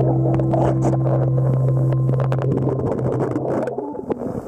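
An engine's steady low hum carried through the water, one unchanging tone with overtones that cuts off shortly before the end, with scattered sharp clicks over it.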